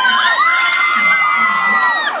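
A group of girls screaming together in one long, high-pitched cheer, several voices at different pitches held for about two seconds before dropping off at the end.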